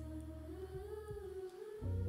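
A man humming one drawn-out note in a pause between phrases, rising a little in pitch and then falling away, over a faint steady low hum.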